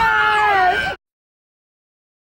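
A high, drawn-out vocal sound that wavers slowly in pitch, like a playful squeal or held note, cut off abruptly about a second in, followed by dead silence.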